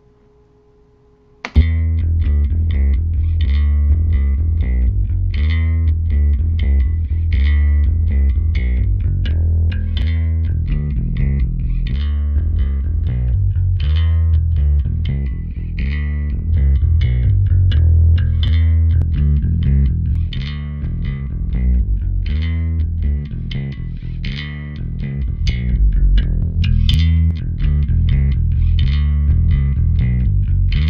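Electric bass guitar line played back through the UAD Eden WT800 bass amp plugin, starting about a second and a half in. The tone is kind of clacky and hi-fi, with a strong low end and sharp note attacks.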